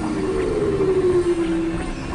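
Synthesizer tone sliding slowly downward in pitch over a hissy electronic drone, loudest about a second in.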